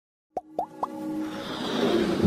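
Animated-logo intro sound effect: three quick pops, each gliding up in pitch, about a quarter second apart, then a whoosh that swells and grows louder over a low held musical tone.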